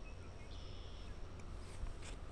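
Quiet outdoor ambience with a steady low wind rumble on the microphone and a faint, brief high tone about half a second in.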